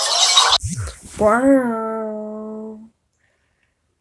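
A child's voice doing a vocal sound effect: a short breathy hiss, then one long sung note that rises a little and then holds steady for about a second and a half before stopping abruptly.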